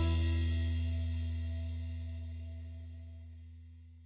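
Closing soundtrack music's final chord ringing out after the last drum and cymbal hit, its low bass note holding longest, fading steadily away to nothing.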